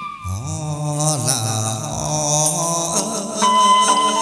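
Chầu văn (hát văn) ritual music for a hầu đồng ceremony: a singer's long, sliding chanted notes over the ensemble, with a steady high note joining about three and a half seconds in.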